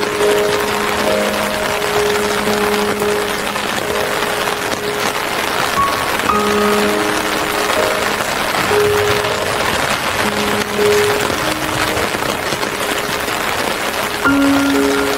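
Slow, calm music of long held notes changing every second or two, over a steady hiss of falling rain.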